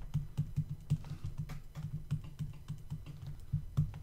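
Stylus tapping and scratching on a tablet screen while handwriting, heard as a quick, irregular run of light clicks.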